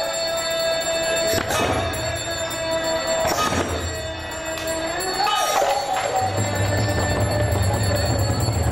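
Bengali devotional kirtan music: several khol (clay barrel drums) beaten by hand, with bright metallic ringing from hand cymbals or bells, over a long held melodic note that bends upward about five seconds in.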